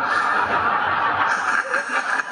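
Audience laughing together at a joke in a lecture, a dense wash of many voices.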